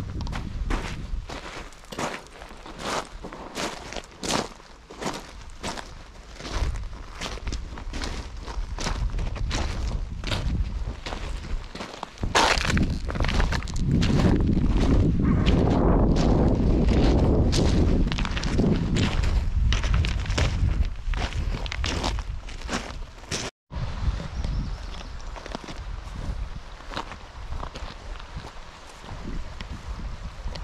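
Footsteps crunching on a shingle riverbank of loose pebbles, about two steps a second. For several seconds in the middle a louder rushing noise covers them. After a brief gap the steps go on more faintly.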